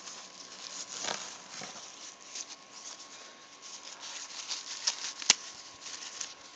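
Plastic packaging and bubble wrap crinkling and crackling in a string of small irregular ticks as it is handled, with one sharper click about five seconds in.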